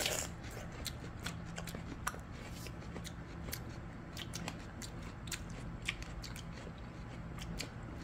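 Quiet, scattered small clicks and crunches of crisp apple-chamoe (oriental melon) being eaten and its cut slices handled, over a faint steady hum.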